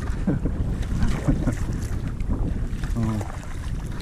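Wind buffeting the microphone of a kayak-mounted camera, as a low rumble, with water splashing and dripping from paddle strokes. A brief voice comes in about three seconds in.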